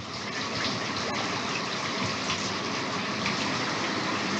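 Communal showers running, water spraying steadily from overhead shower heads onto the tiled floor and walls.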